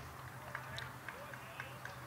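A quiet pause in the broadcast audio. It holds a low steady hum and a run of faint, evenly spaced light ticks, about four a second.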